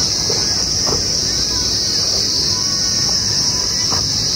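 Steady, shrill chorus of insects in the trees, a high-pitched unbroken drone.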